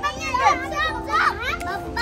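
Children playing: several excited high children's voices calling out, their pitch rising and falling, as they ride a nest swing together.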